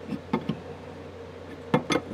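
A few short metallic clicks and clinks of steel wrenches working on a compression nut and valve body as the nut is tightened. The loudest click comes near the end.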